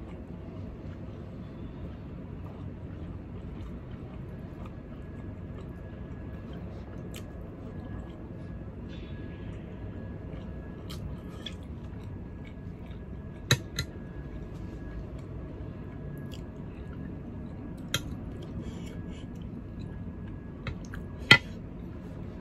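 A man eating with his fingers: quiet chewing over steady low room noise, broken by a few sharp clicks. The loudest click comes near the end.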